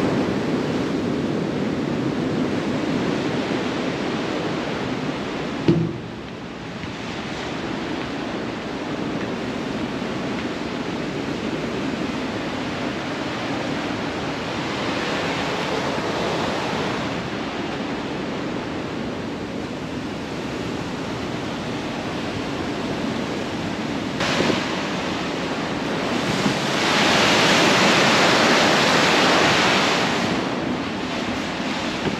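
Steady rush of open-ocean sea and wind over the bow deck of a ship under way, growing louder near the end as the water alongside the hull comes into view. There is a brief knock about six seconds in.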